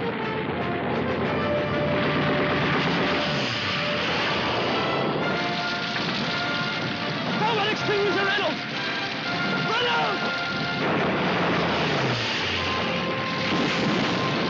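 Steady roar of low-flying de Havilland Mosquito bombers' engines under an orchestral film score, with a man shouting briefly about eight seconds in.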